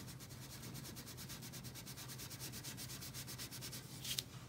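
Wax crayon rubbed rapidly back and forth on paper, coloring in a solid area: a faint, even run of quick strokes.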